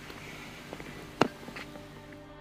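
Chain-link fence gate being pushed open, with a single sharp clack a little over a second in and a few lighter knocks around it.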